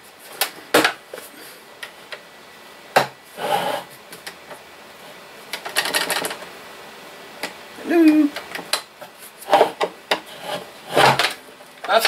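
Plastic road barricade lamp being handled and reseated on its battery box: a series of sharp plastic clicks and knocks with a few short scraping rubs in between, as the lamp head is pushed and clipped back into place to restore its electrical contact.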